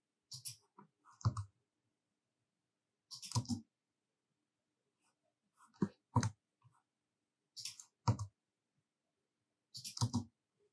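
Computer mouse and keyboard clicks in short clusters every second or two, with dead silence between.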